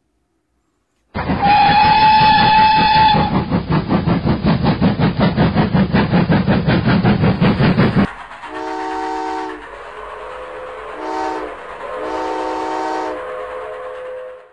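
Steam train sound effect: a train whistle blows for about two seconds, then a rhythmic running beat at about four a second. About eight seconds in it changes to three blasts of a chord whistle, the last the longest, over a steady hiss.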